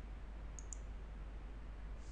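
Two faint computer clicks close together about half a second in, over a low steady hum.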